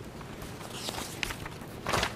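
Paper rustling as a document page is turned, loudest near the end, after a couple of faint ticks and rustles about a second in.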